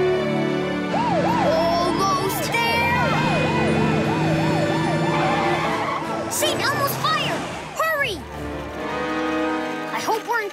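Fire engine siren wailing up and down in quick repeated sweeps, about three a second, then in a few longer, higher sweeps later on, over background music.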